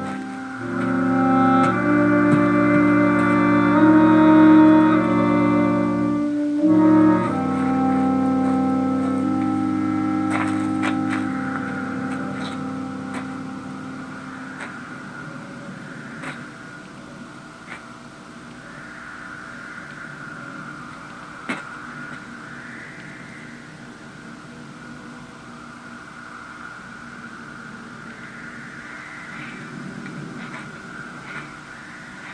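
Film score played through a television's speaker: held chords that shift from one to the next, loud for about the first dozen seconds with a brief break about six seconds in, then fading away to a quiet background with a few faint clicks.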